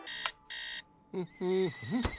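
A digital alarm clock gives two short electronic beeps within the first second. About a second in, a louder voice starts up with a wavering, wordless tune.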